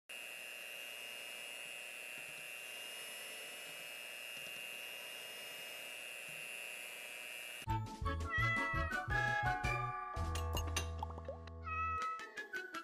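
Electric hand mixer running steadily, its beaters whipping cream in a glass bowl, with a constant high motor whine. About eight seconds in it cuts off and bright jingle music with a beat starts.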